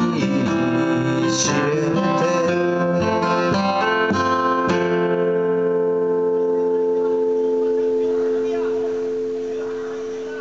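Steel-string acoustic guitar, capoed, strummed with a pick through the closing chords; a last strum about five seconds in is left to ring and slowly die away, the song's final chord.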